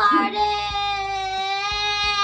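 A young girl singing one long held note, starting about a third of a second in, over background music with a steady beat.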